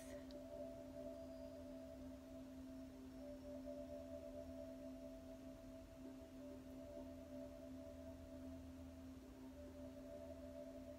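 Faint background meditation drone: two steady held tones, a low one and a higher one, sounding without a break, with a singing-bowl-like ring.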